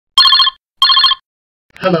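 Old-style telephone bell ringing: two short rings in quick succession, each a rapid trill of metallic strikes. A voice answers "Hello" near the end.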